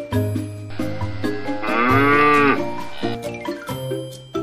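A cow moos once, a call of about a second that rises and falls in pitch, over background music.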